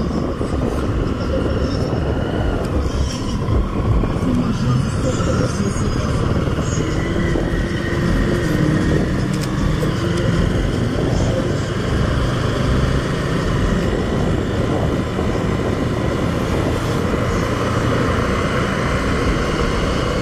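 Motorcycle riding slowly through city traffic: engine running under steady wind and road noise on the rider's camera microphone.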